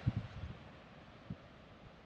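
Quiet outdoor background: a faint low rumble that dies away within the first half second, then near silence with one soft bump midway.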